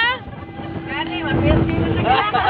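An engine running, a steady hum with a low rumble that grows louder about halfway through, under people's voices.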